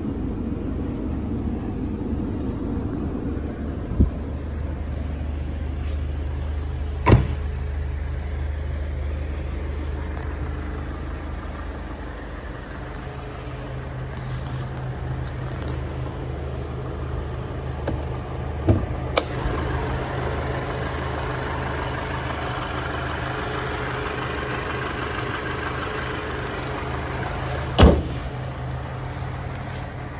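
A 2018 Alfa Romeo Giulia's 2.0-litre turbocharged four-cylinder idling steadily in park. The low hum changes tone about twelve seconds in. A few short sharp knocks stand out, the loudest about seven and twenty-eight seconds in.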